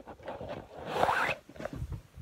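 Handling noise from a handheld phone being moved about: a rasping rub close to the microphone, loudest about a second in.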